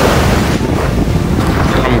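Wind blowing across the camera microphone: a loud, steady rush with a heavy low rumble.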